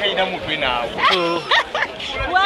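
Voices of a crowd talking and calling out over one another.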